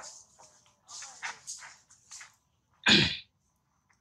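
Baby long-tailed macaque giving several short, high-pitched squeaking cries. Just before the end comes one sudden, loud, short noisy burst.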